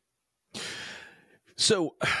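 A man's audible breath, starting about half a second in and fading away over most of a second, followed by the spoken word "so" near the end.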